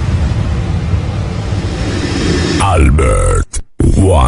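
Sound-system intro effect: a heavy bass-laden bed under an electronically processed voice, with swooping falling-then-rising pitch glides near the end and a sudden brief cut to silence just before it ends.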